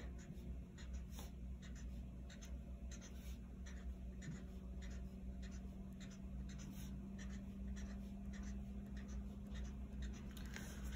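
Felt-tip marker scratching on paper in quick, irregular short strokes as a shape is colored in, faint over a steady low hum.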